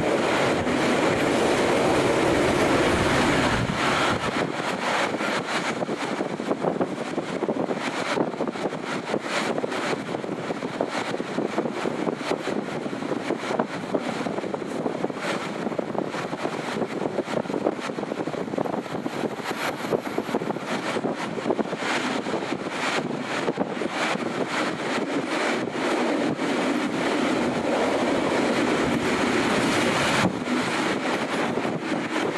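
Northern Explorer passenger train running along the line, heard from its open-air viewing carriage. There is a steady rush of wheels on the rails and wind, with frequent short clicks from the track. It is a little louder and deeper for the first few seconds.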